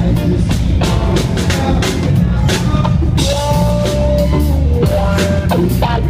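A live band playing loudly through a concert PA, with a driving drum kit and heavy bass; a sustained higher note is held through the middle.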